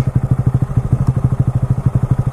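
Honda Grom 125 cc single-cylinder engine idling with a steady, even putter.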